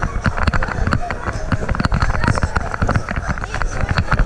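Bouncing on trampoline beds: many irregular thumps and knocks, several a second, over the background voices of children.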